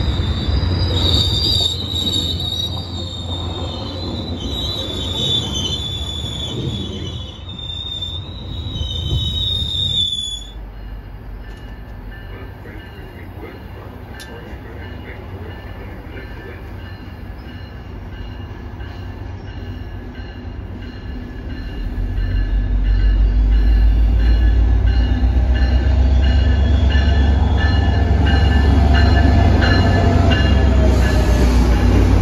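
FrontRunner commuter train rolling around a curve, its wheels squealing high and wavering over the rumble of the cars for about the first ten seconds. The sound then drops abruptly and stays quieter, with faint steady tones, until a diesel locomotive's deep rumble builds from about two-thirds of the way in as it pulls along the platform.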